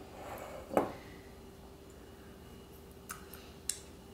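Simple syrup poured briefly into a cocktail shaker, ending in a sharp clink just under a second in; two faint clicks follow near the end.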